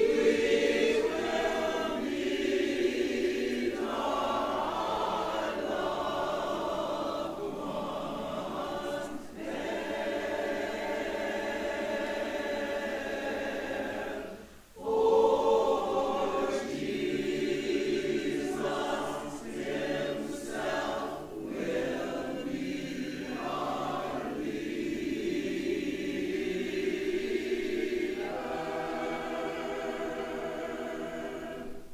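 Mixed choir singing a spiritual in sustained multi-part harmony. About halfway through the voices break off briefly, then come back in strongly.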